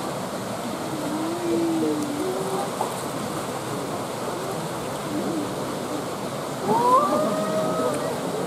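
Steady rush of water in a zoo's polar bear pool, with visitors' voices over it; one voice calls out, rising in pitch, about seven seconds in.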